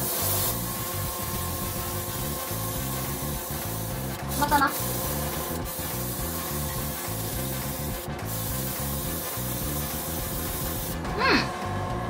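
Airbrush spraying paint loaded with orange holographic nail glitter powder, a steady hiss that breaks off briefly near the 8-second mark and stops about 11 seconds in.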